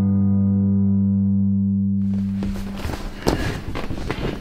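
A band's last chord, held and fading out, then, after a cut about two seconds in, rustling and bumping as a large vinyl inflatable flamingo is handled, with a sharp knock a little after three seconds.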